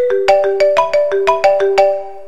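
Mobile phone ringtone: a quick marimba-like melody of struck notes, about six a second, cutting off suddenly near the end as the call is answered.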